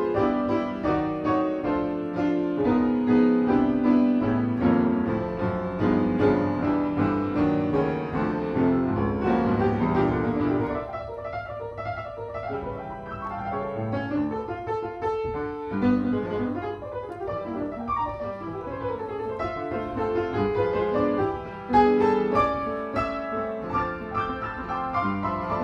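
Solo piano played with both hands, full chords under a melody line; the playing drops softer about halfway through, then a loud struck chord comes near the end.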